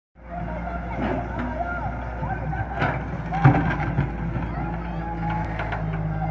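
Wheeled excavator's diesel engine running steadily as the boom and bucket work through loose soil, with a few knocks; the loudest is about three and a half seconds in.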